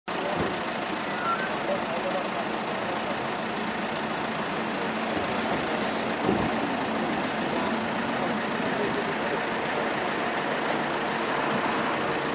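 Steady idling of a vehicle engine mixed with the indistinct voices of people standing around, with a single short knock about six seconds in.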